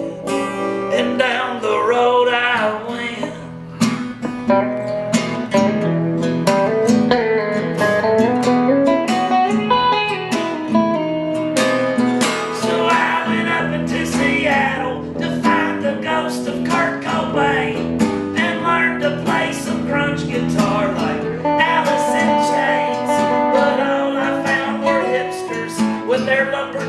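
Live guitar music: a strummed acoustic guitar with an electric guitar playing lead lines over it, no lyrics made out.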